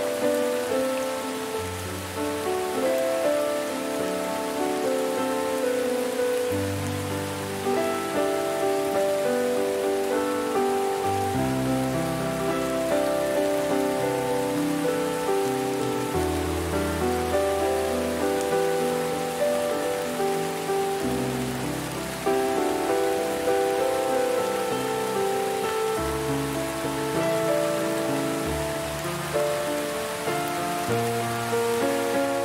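Steady rain falling, mixed with soft, slow instrumental music: held melody notes over low bass notes that change about every five seconds.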